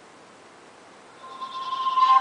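Faint hiss, then about a second in the Samsung Galaxy 3 (GT-I5801) startup jingle begins from the phone's small speaker, a tone swelling louder as the boot animation starts: the sign of the phone booting up.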